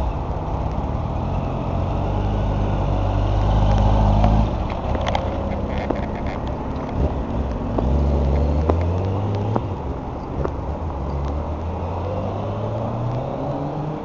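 Kawasaki ZX11's inline-four engine as the motorcycle pulls away. The revs climb and cut back sharply about four seconds in, rise again around eight seconds, then the note falls and fades as the bike rides off.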